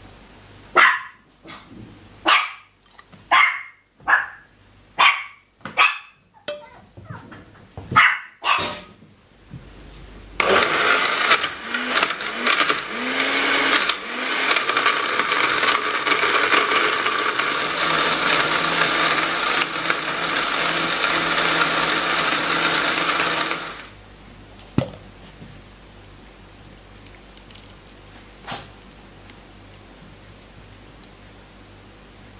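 A dog barks about ten times in short, sharp barks. Then a countertop blender runs steadily for about thirteen seconds, puréeing tofu into cheesecake batter, and stops suddenly.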